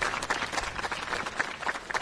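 A group of people applauding, a dense run of hand claps.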